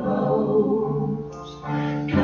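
Gospel worship song sung live by a man and a woman into microphones, held notes with a brief dip between phrases near the end.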